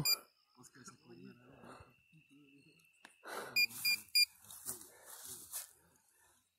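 Metal detector sounding: a thin steady high tone, then three short high beeps in quick succession about three and a half seconds in, under faint low voices.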